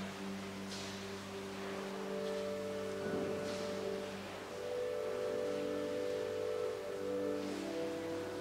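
Church organ playing slow, held chords, the notes changing every second or two. Faint shuffling sounds now and then.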